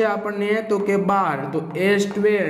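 A man speaking continuously in a lecturing voice; only speech is heard.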